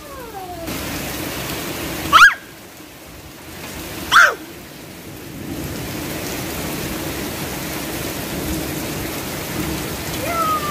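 Steady rain falling, with two short, sharp, high-pitched squeals about two and four seconds in.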